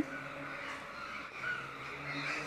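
Quiet outdoor background ambience with a faint low steady hum; no distinct sound stands out.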